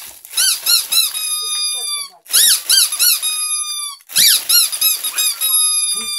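Squeaky toy squeezed over and over: three rounds of quick, high squeaks, each ending in a longer, slightly falling squeal.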